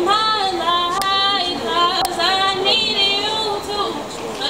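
A young woman singing solo, holding notes and sliding between pitches with short breaths in between; no instruments can be heard.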